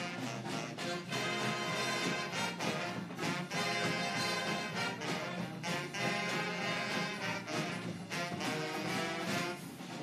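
A student band playing jazzy music live: a brass and saxophone horn section with sousaphone, over snare and bass drums keeping a steady beat.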